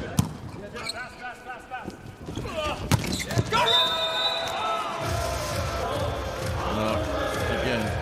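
A volleyball bouncing on the hard court floor, with sharp knocks near the start and again about three seconds in. Arena crowd noise and voices run underneath, and the crowd grows louder and steadier in the second half.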